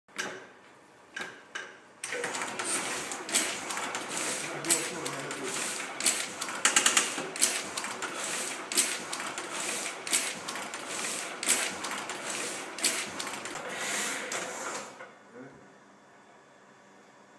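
Heidelberg platen printing press running: a continuous mechanical clatter with a heavier clack about every one and a half seconds, starting abruptly about two seconds in and stopping shortly before the end. A few separate clicks come before it starts.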